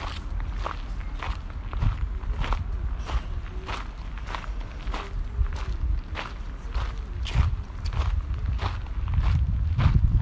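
Footsteps crunching on a sandy gravel path at an even walking pace, about three steps every two seconds, over a low steady rumble.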